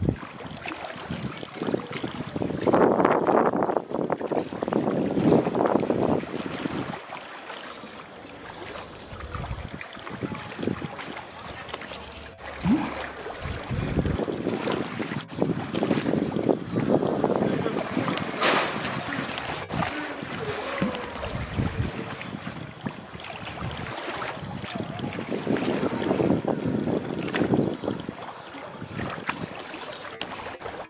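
Pool water splashing and sloshing as a hippopotamus swims and pushes a large floating ball around, coming in several louder surges.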